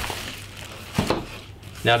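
Plastic wrapping and cardboard rustling as a bagged solar panel is lifted out of its shipping box, with a single knock about a second in as it is laid down; a man's voice starts near the end.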